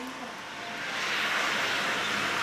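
Steady outdoor rushing noise with no distinct events; it swells slightly about halfway through.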